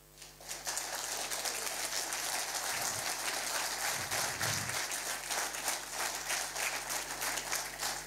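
Audience applauding, many hands clapping at once; the applause swells up within the first second and holds steady.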